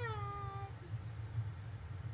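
A single long, pitched cry that falls slightly in pitch and stops under a second in, over a steady low hum.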